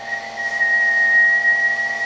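A person whistling one steady high note into a CB radio microphone, a whistle test that drives the amplifier to its peak output on the dummy load.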